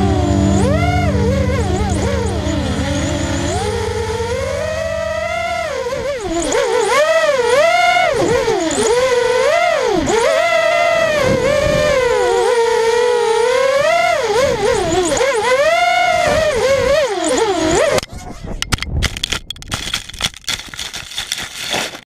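Mini FPV quadcopter's brushless motors (2300kv, 5-inch props) whining, the pitch rising and falling constantly with throttle changes. About three-quarters of the way in the whine cuts off suddenly as the quad crashes into the grass, leaving irregular crackling and rustle on the camera's microphone.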